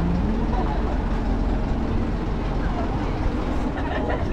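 Steady low rumble and hum of a truck engine running close by, mixed with the voices of passing pedestrians.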